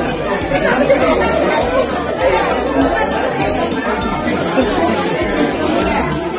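Chatter of a room full of party guests: many voices talking at once, steady and overlapping, with no single voice standing out.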